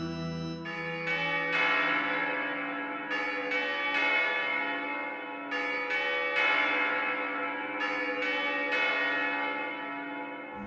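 Church bells struck in repeating groups of three, about half a second apart, each group coming roughly every two and a half seconds and every strike ringing on into the next. A held low drone stops just after the start.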